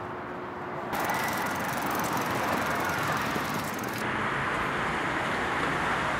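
Street ambience: steady traffic noise from a nearby road, stepping up in level about a second in.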